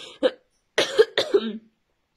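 A woman coughing: one short cough, then a quick run of about four, from a cold with a sore throat.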